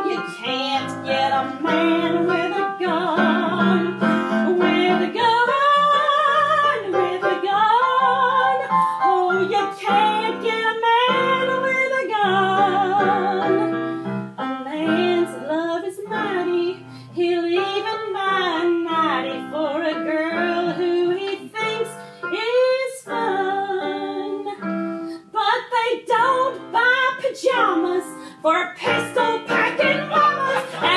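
A woman singing a song with live piano accompaniment, her held notes sung with vibrato.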